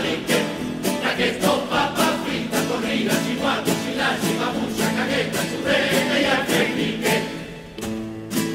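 A carnival coro singing as a choir over a plucked-string ensemble of guitars and Spanish lutes strumming a steady, even beat. The music drops quieter shortly before the end.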